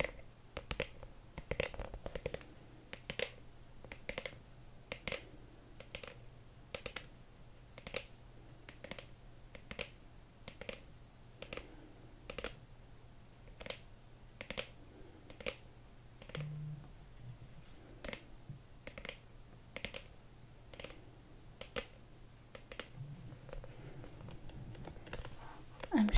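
Long acrylic fingernails tapping on a black Saint Laurent hard case, in a slow even rhythm of roughly one and a half light taps a second.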